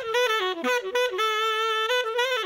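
A recorded saxophone part played back solo: a short run of quick notes dipping to a lower one, then one long held note. The condenser-miked sax is running through a compressor that is being set to squeeze it fairly hard.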